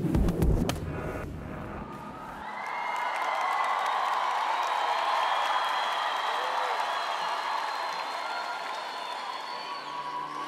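A short musical sting with deep bass lasts about two seconds. It gives way to a large arena crowd cheering and applauding steadily.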